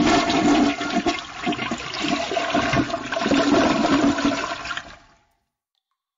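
Toilet flushing, a loud rush and gurgle of water over about five seconds, cut off abruptly into silence.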